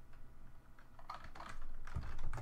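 A few keystrokes on a computer keyboard, sparse at first and coming quicker near the end.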